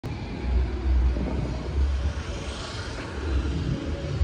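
Street traffic noise with an uneven low rumble; a vehicle passes by around the middle.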